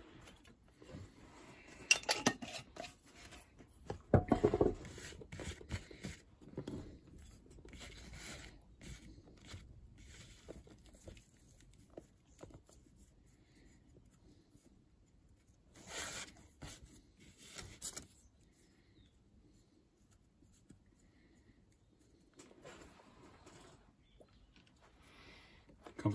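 Fingers loading rubbed-out flake tobacco into a sandblast briar pipe bowl: soft rustling and handling, with sharp knocks about two and four seconds in.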